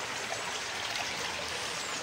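Garden pond water splashing and trickling steadily where a running pump's outflow churns the surface.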